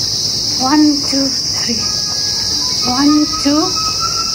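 Steady high-pitched drone of insects in the trees, with a few short voice sounds about a second in and again around three seconds.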